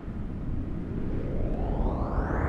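Sound-design riser for an animated TV channel logo: a deep rumble that swells in, with a hissing whoosh climbing steadily in pitch.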